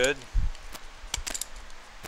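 A few scattered sharp metallic clicks from a socket ratchet as the rocker-shaft tower bolts on a Rover V8 cylinder head are slowly tightened down.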